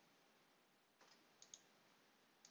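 Near silence broken by a few faint computer mouse clicks: one about a second in and two more close together around a second and a half.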